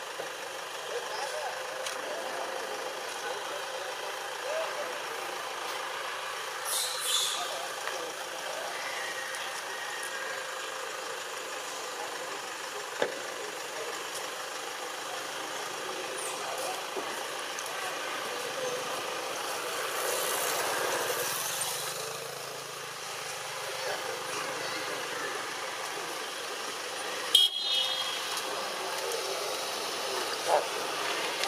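Steady outdoor background of distant vehicles and faint voices, with a couple of brief sharp clicks, the loudest one near the end.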